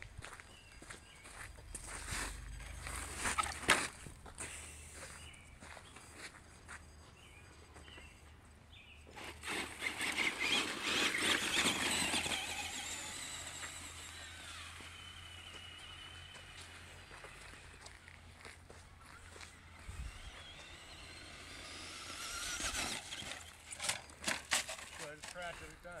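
Brushed electric motor of a Traxxas Stampede RC truck whining, with tyres crunching on gravel, as the truck drives off and back. The whine swells about ten seconds in, slides down in pitch as it fades, and rises again near the end, with scattered knocks and scrapes.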